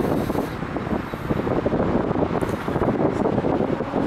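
Wind buffeting the microphone: a steady low rushing rumble that flutters in strength.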